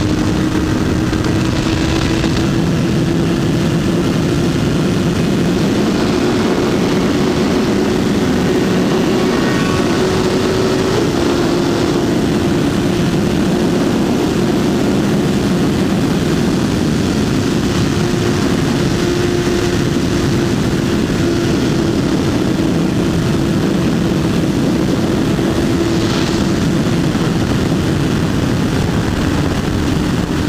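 Honda CBR1000RR Fireblade's inline-four engine running steadily at highway speed under heavy wind rush on the microphone. The engine note holds one pitch, creeping up slightly in the first third and then staying level.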